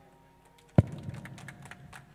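Handheld microphone being handled and fitted into its stand, heard through the microphone itself: one sharp knock a little under a second in, then a run of small clicks and rubbing.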